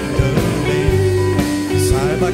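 Live rock-folk band: strummed acoustic guitar, electric guitar, keyboard, bass and drum kit, with a man singing.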